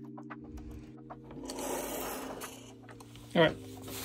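Fishing reel being cranked as a swimbait is retrieved through the water, a mechanical whirring that swells about a second and a half in and then fades.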